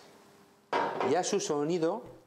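A short near-silent pause with a faint steady hum, then a man speaking from under a second in.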